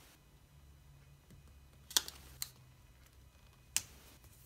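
Fingers and fingernails pressing a sticker strip down onto a paper planner page, giving a few sharp clicks: two about two seconds in, half a second apart, and one near the end.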